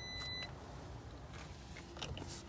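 A steady high-pitched electronic beep that cuts off about half a second in, followed by quiet room tone.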